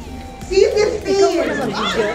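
Excited high-pitched shouts and squeals from several audience members, overlapping, breaking out about half a second in over a lower hubbub of voices.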